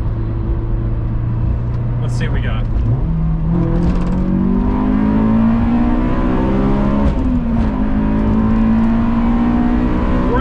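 Honda S2000's 2.0-litre F20C four-cylinder engine heard from inside the cabin under acceleration. It holds a steady note at first. About three seconds in, the pitch steps up and climbs. It dips briefly around seven seconds in, then climbs again.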